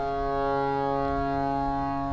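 Bina harmonium playing one steady held chord, its reeds sounding with an even reedy drone.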